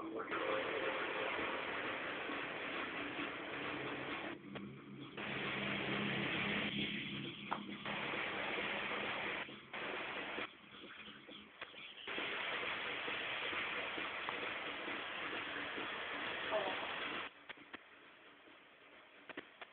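Aerosol spray-paint can hissing in long bursts, stopping and restarting several times and cutting off about a second before the end.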